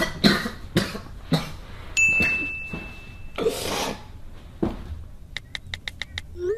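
A young man laughing hard in short, breathless, wheezing gasps that sound almost like coughing. About two seconds in, a steady high beep sounds for just over a second, and a quick run of sharp clicks comes near the end.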